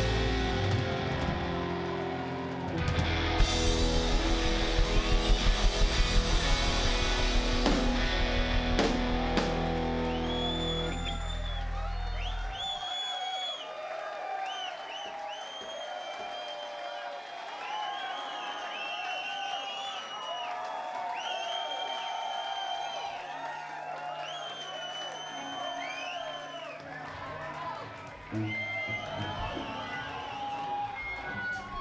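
Live rock band with electric guitars, bass and drum kit playing loud. About twelve seconds in, the bass and drums drop out, leaving electric guitar notes that bend and waver up and down. Near the end the full band crashes back in with a sung "Oh".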